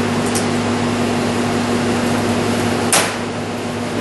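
Steady mechanical hum and hiss of room equipment, like ventilation or a machine running, with one sharp click about three seconds in, where a higher tone in the hum drops out.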